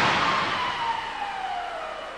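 The tail of a 1996 Dodge Grand Caravan's 40 mph offset-barrier crash: the crash noise dies away, with a tone sliding steadily down in pitch through it.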